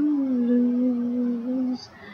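A young female voice singing the word "lose", holding one long note that dips a little in pitch at the start. The note stops shortly before the end.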